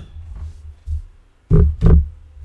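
Two dull thumps about a third of a second apart near the end, over a low steady hum: knocks from handling things near the microphone.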